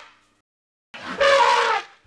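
A voice imitating an elephant's trumpeting: one raspy, horn-like 'Gr-ICK!' about a second long, starting about a second in and trailing off with a slight drop in pitch.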